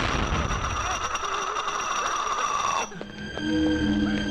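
Film soundtrack: a loud, noisy sound effect with a slowly falling tone cuts off suddenly near the three-second mark. Background score with low held synth notes follows.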